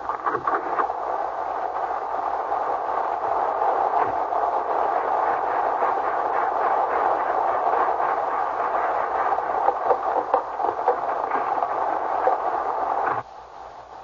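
Radio-drama sound effect of a heavy rainstorm, a steady rushing hiss that cuts off suddenly near the end.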